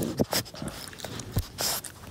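French bulldog puppy breathing and snuffling right at the microphone, in a string of short noisy bursts with a longer one near the end.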